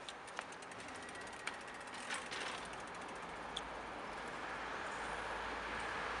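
Outdoor street sound: a rapid run of light mechanical ticks, like a ratchet, in the first couple of seconds, then a steady rushing noise with a low rumble that slowly grows louder.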